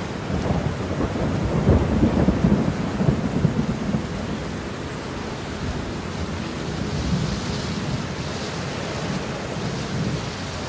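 Thunderstorm sound: a long crackling rumble of thunder over steady rain, the thunder loudest in the first few seconds and then fading into the rain's even hiss.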